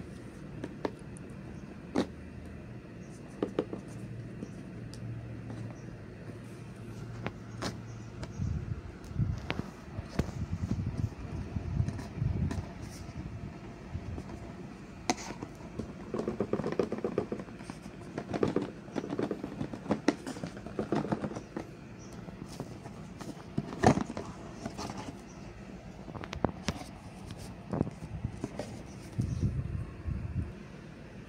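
Cardboard product box being handled and opened by hand: scattered taps, knocks and scrapes of fingers and the box on a soft surface, busiest in the middle stretch, over a low steady hum in the first several seconds.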